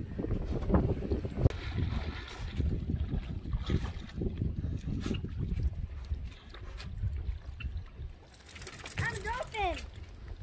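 Wind buffeting the microphone in a steady low rumble, with scattered scuffs and knocks as a wet dog shakes off and rubs itself on a wooden dock. Near the end comes a brief burst of hiss with high, sliding calls.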